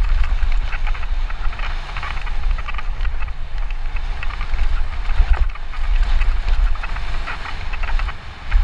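Mountain bike descending fast on a dry dirt trail, heard from a helmet camera: continuous wind rumble on the microphone over the crunch of tyres on loose dirt and gravel and a steady clatter of rattles from the bike.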